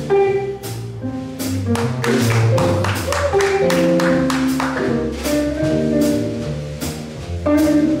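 Live jazz quartet of keyboard piano, archtop guitar, bass and drum kit playing a standard, with changing piano and guitar notes over regular cymbal strokes.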